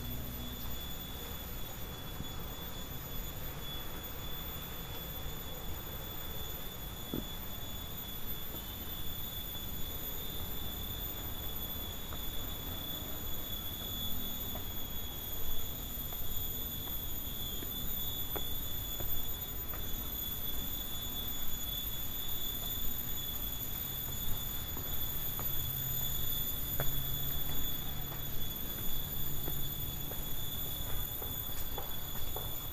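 A steady high-pitched whine held on one pitch throughout, with faint scuffs and taps of footsteps on stone steps beneath it.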